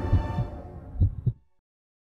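News outro music sting: a ringing tail with a few low, heartbeat-like thumps that cuts off abruptly about a second and a half in.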